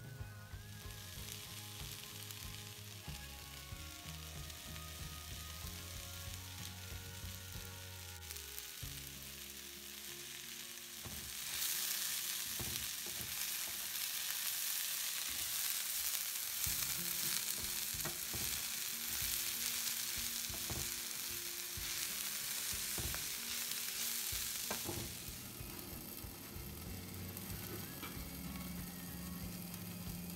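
Ivy gourd pieces sizzling as they are stir-fried in a hot nonstick pan, with a spatula scraping and knocking against the pan as it stirs. The sizzling grows much louder about a third of the way in and drops back down a little before the end.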